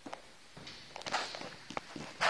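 Footsteps, a few separate steps with some rustling between them.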